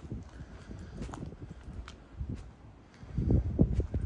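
Footsteps on hard stone paving and steps, with a louder cluster of thuds in the last second.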